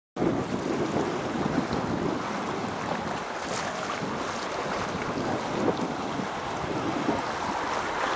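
Wind buffeting the microphone over the steady wash of the sea.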